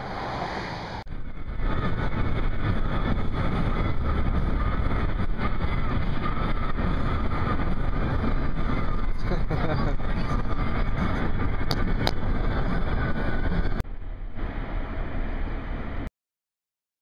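Steady road and wind noise from a moving car. The sound changes abruptly about a second in and again near the end.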